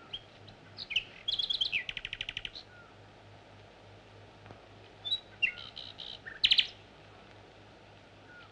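Bird chirps and a rapid trill heard faintly from an old film soundtrack, over a steady low hum. There are a few chirps, a run of fast even notes about a second and a half in, and another burst of chirps and a short trill between five and six and a half seconds.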